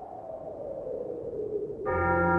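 Opening of a black metal demo's intro: a hissing, noisy sound fades in with a tone gliding slowly downward. Near the end a sustained droning chord with many steady overtones comes in suddenly.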